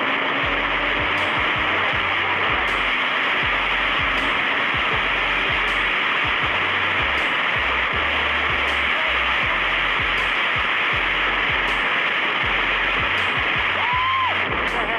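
Steady rush of wind over a phone microphone on a moving motorcycle, with a faint engine note climbing in pitch in the first two seconds.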